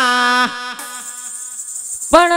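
Folk devotional music: a singer's held, wavering note ends about half a second in. It leaves a quieter, thin, buzzing sustained tone from the accompanying instrument, with faint light drum strokes.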